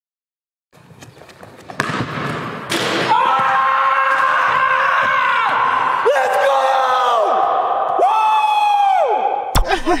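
A few sharp knocks of a basketball, then a man yelling in a gym: several long held shouts, each falling off in pitch at its end, echoing off the hall.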